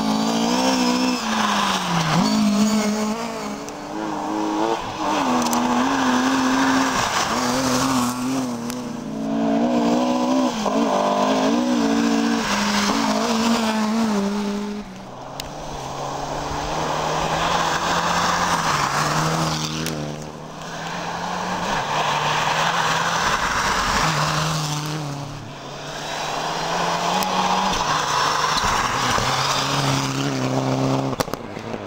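Rally car engines at full throttle, the engine pitch rising and falling with gear changes and lifts. A car comes closer and passes near the end.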